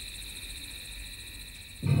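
Steady, high-pitched insect chirring, several thin tones held evenly.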